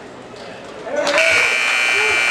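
Gym scoreboard buzzer sounding about a second in, one long loud steady tone, over crowd voices and shouts.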